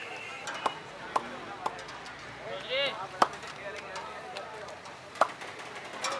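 Sharp metallic knocks of long frying ladles striking a large puri-frying wok (karahi): three quick knocks about half a second apart, then a louder single knock, and one more near the end, over street-stall background noise. A short voice call is heard in the middle.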